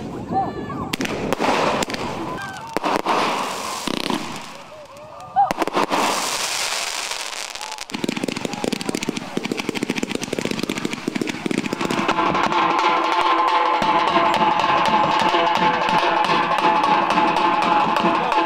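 Fireworks with crowd voices: a rocket goes up and bursts, then from about five seconds in a fireworks battery fires a rapid run of crackling shots. Over the last several seconds a tassa drum group plays a steady, driving rhythm.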